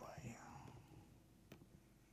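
Near silence: faint muttered speech trails off early, then low room hum with a single faint click about a second and a half in.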